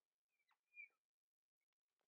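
Near silence, with a few faint, short squeaks of a marker pen drawing on a glass lightboard in the first second.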